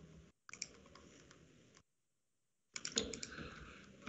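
Faint clicks of computer keys while the lecture slide is advanced to its next line: a few clicks about half a second in and a cluster near three seconds. Between them the audio cuts out to dead silence for about a second.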